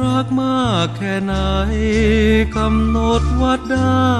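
Thai luk krung song playing: a melody slides down in pitch about half a second in and again near the end, over a steady bass line.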